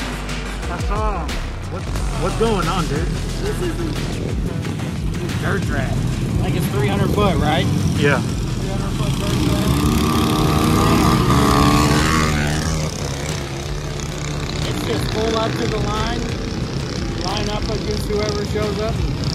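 Small engines of minibikes, quads and go-karts revving and rising in pitch as they pull away from a dirt-track start, with background music and voices underneath.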